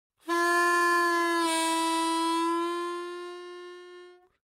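One long, horn-like note held on a single pitch. It dips slightly in pitch about a second and a half in, then slowly fades away near the end.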